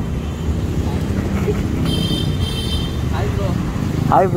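A motorcycle engine running steadily, a low rumble. About halfway through come two short high-pitched beeps, half a second apart.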